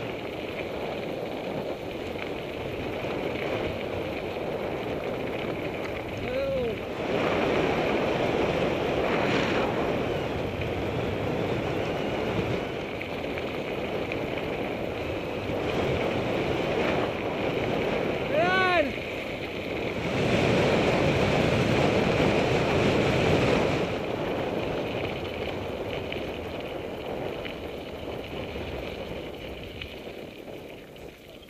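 Wind rushing over the camera microphone on a fast mountain-bike descent of a gravel road, with the rumble of tyres on gravel. It swells louder twice, about a quarter of the way in and again past two-thirds of the way through.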